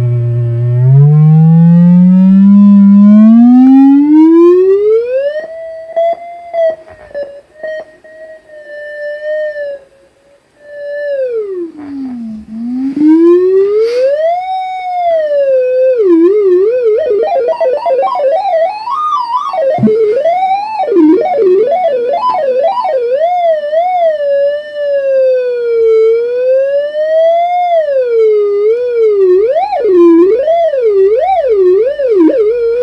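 Homemade theremin-style synthesizer, an Axoloti board played through Sharp infrared distance sensors, sounding a single gliding electronic tone as a hand moves over it. The pitch slides steadily upward for the first few seconds and holds with small steps and breaks while the sound briefly fades, swoops down low and back up near the middle, then wavers quickly up and down for the rest.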